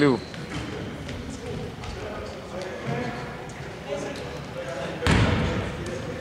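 A basketball being dribbled on a hardwood court, its bounces echoing in a large hall, with a louder thud about five seconds in.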